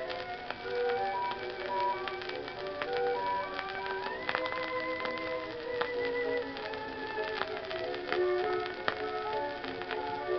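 Instrumental passage from a 1920 acoustic-era shellac 78 rpm record: the accompaniment plays a stepping melody with a long held high note in the middle, no voices. Surface crackle from the shellac runs under it.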